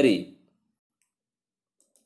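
The last syllable of a spoken word trailing off, then near silence with one faint click near the end.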